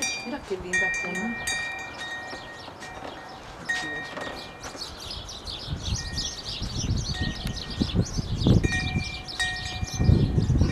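Metal wind chimes ringing, a few clear fixed-pitch tones struck now and then and left to ring on. In the second half, irregular low rumbling thumps join them.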